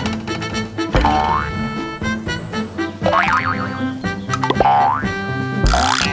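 Cartoon background music with comic sound effects: a few springy, rising boing-like swoops, some starting with a low thump.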